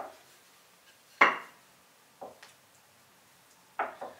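A wooden rolling pin knocking on a wooden tabletop as it is picked up and laid down on a towel: one sharp knock about a second in, then a few fainter knocks.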